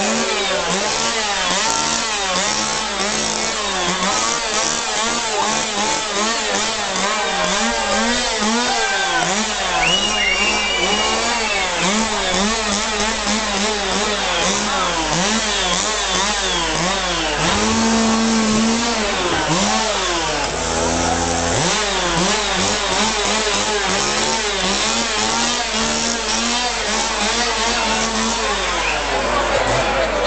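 A chainsaw engine revved over and over, its pitch swooping up and down without a break. About two-thirds of the way through it is briefly held at one steady pitch.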